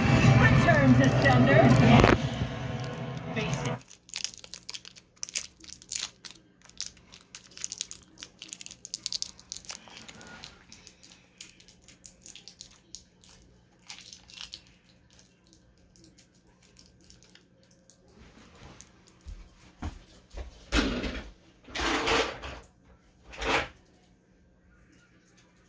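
Film soundtrack music and voices for the first few seconds, then it drops away sharply. What follows is a scatter of clicks and crackling rustles over a faint steady hum, with a few louder bumps near the end.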